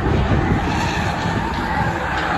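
Engines of several stock cars running hard as they race around an oval track, with tyres sliding on the wet surface.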